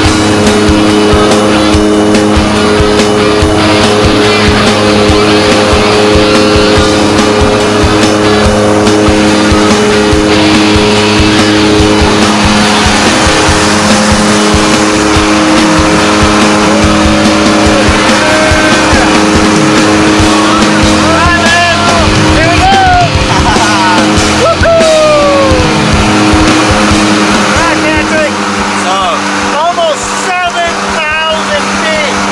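Aircraft engines droning steadily inside the jump plane's cabin, a loud, even hum with several held tones. Brief rising and falling sounds come in over it in the last ten seconds.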